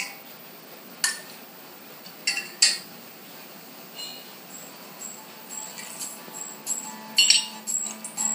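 Several sharp clinks of glassware being handled, a cut-glass decanter and its stopper and a glass bowl, about a second in, twice around two and a half seconds, and in a quick cluster near the end.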